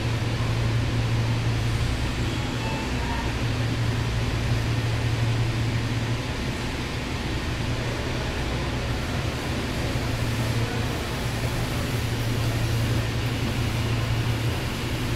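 Interior of a Seibu 6000 series commuter train car standing at a station: a steady low hum from the car's air conditioning and onboard equipment, with an even background hiss and no traction-motor whine.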